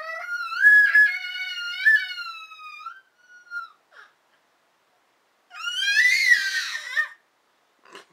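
A six-month-old baby's high-pitched squeals: one long squeal that rises in pitch and wavers for about three seconds, two short squeaks, then a second loud squeal a couple of seconds later.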